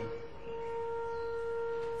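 A quiet, steady held tone at one unchanging pitch with a few faint overtones, swelling slightly in the first half second.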